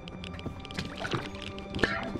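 Film score music with steady sustained tones, over irregular footfalls and rustling of a person running through undergrowth. A sharp thump about 1.8 s in comes as the runner falls.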